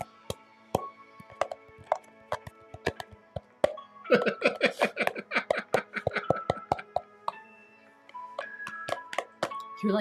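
Hand drumming on an upturned plastic bowl: a string of sharp, irregular taps that comes fastest in the middle, with laughter over it and music with held notes near the end.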